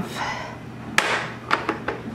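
A sharp knock on a hard surface about a second in, followed by three lighter clicks close together.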